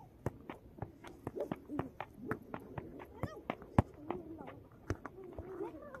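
A football being juggled: a quick run of short thuds, about three to four touches a second, one louder touch near the middle, as the ball is kept up off the foot and knee. Faint voices can be heard in the background.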